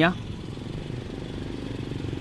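A vehicle engine running steadily at low revs, an even low hum that grows slightly louder near the end.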